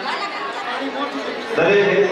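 Several people talking over one another in a tiled room, with one voice coming in louder and clearer about one and a half seconds in.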